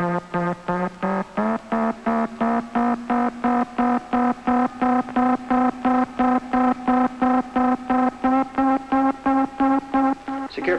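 A spaceship's blast-off synchronizer, a film sound effect: a pulsing electronic tone, about four to five pulses a second. It steps up in pitch about a second in, then creeps slowly higher, signalling the run-up to blast-off.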